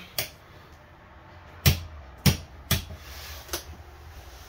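Four or five short, sharp clicks and light knocks at irregular intervals, the loudest a little under two seconds in and just after two seconds.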